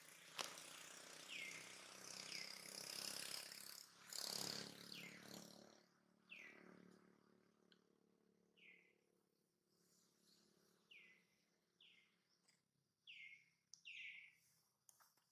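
A bird calling: a short, high chirp that falls in pitch, repeated every second or two. Over the first half there is a faint hiss of noise with a louder swell about four seconds in.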